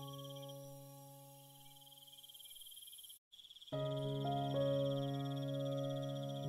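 Soft, slow piano music: a chord fades out over about three seconds, a brief dead gap, then a new chord sounds and holds. A steady high chirring of crickets runs behind it.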